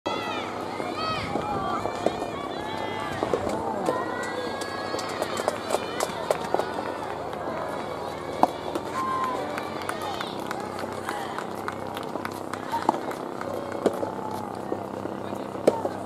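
Several voices calling out and cheering across outdoor soft-tennis courts, loudest in the first few seconds, with scattered sharp pops of soft rubber tennis balls struck by rackets.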